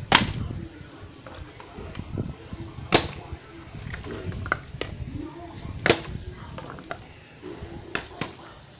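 A plastic Coca-Cola bottle being flipped and landing on concrete: three sharp clacks, one near the start, one about three seconds in and one about six seconds in, with a few lighter clicks of handling between them.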